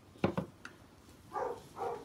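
Two quick knocks, followed by a dog barking twice, muffled.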